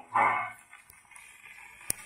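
The closing note of a 1932 78 rpm shellac record played on a 1920s acoustic cabinet gramophone, cutting off about half a second in. After it, faint surface hiss comes from the needle running on in the groove, with a sharp click near the end.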